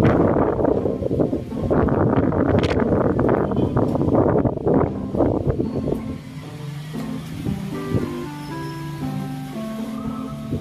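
Background music with a simple melody of held notes, buried for the first six seconds or so under loud wind noise on the microphone, which then drops away.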